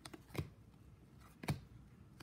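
2002-03 Upper Deck hockey trading cards being flipped through by hand, each card slid off the stack with a brief papery flick; three flicks, the loudest about a second and a half in.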